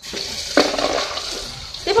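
Water running from a kitchen tap into a sink: a steady rush that starts suddenly and slowly fades.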